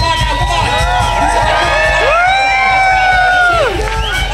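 Large crowd cheering and whooping, many voices shouting at once. About halfway through, one long high 'woo' rises above the rest and drops away near the end.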